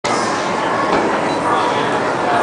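Steady rush of air from the fans driving a fog tornado exhibit, with people talking in the background.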